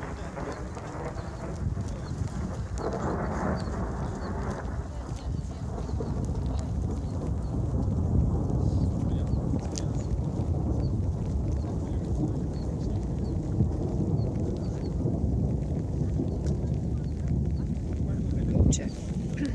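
Wind buffeting the microphone as a steady low rumble, with a faint high chirp repeating at a steady pace.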